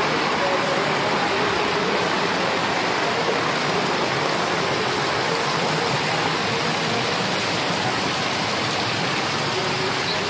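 Fast-flowing muddy floodwater rushing along a street in a steady, loud torrent.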